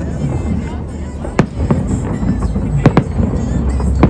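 Aerial firework shells bursting overhead: sharp bangs about a second and a half in, a weaker one just after, another near three seconds and one at the very end.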